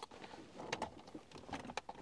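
Plastic wiring-loom plug being worked into the back of an aftermarket stereo head unit: a few faint clicks and plastic rustles as the connector is pushed home, with two small click pairs about three quarters of a second in and near the end.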